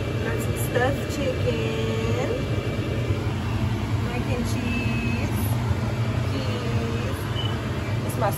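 Faint, scattered voices in the background over a steady low hum.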